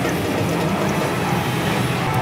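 Loud, steady din of a pachislot parlour: a dense wash of mechanical clattering from the slot machines.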